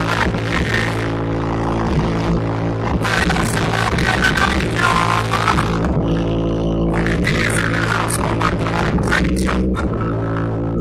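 Live hip-hop performance played loud through a concert PA: a steady bass-heavy beat with a rapper's voice on the microphone over it.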